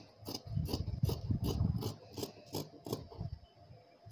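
Tailoring scissors cutting through cloth in repeated snips, about two or three a second. A louder rubbing noise runs under the snips from about half a second in to about two seconds in.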